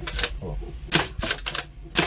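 Homemade pump-action Caliburn foam-dart blaster being worked: a quick run of sharp plastic clicks and clacks, the loudest about a second in and again near the end.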